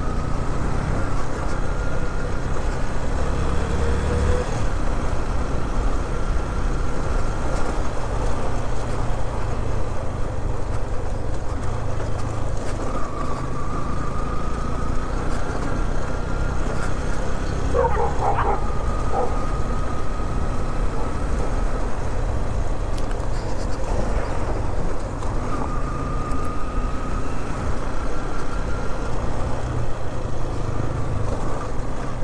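Motorcycle engine running under way with wind and road noise, its whine climbing in pitch three times as the bike accelerates. A brief, sharp sound breaks in about two-thirds of the way through.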